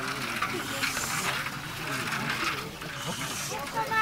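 Water sloshing and splashing as several gold pans are swirled and dipped in a shallow stream, in uneven swells, under faint background chatter.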